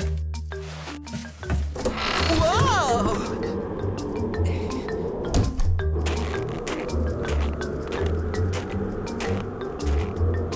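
Cartoon background music with low bass notes; about two seconds in, a gust of winter wind with a wavering whistle comes in, leaving a steady blowing snowstorm wind under the music.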